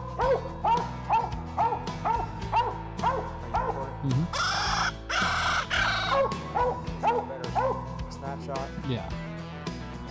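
Coonhound barking steadily at a treed raccoon, short chop barks about three a second. The barks are broken by about two seconds of loud rushing noise around the middle and thin out near the end.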